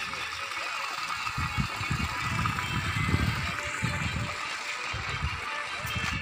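People's voices talking indistinctly, over a steady outdoor hiss.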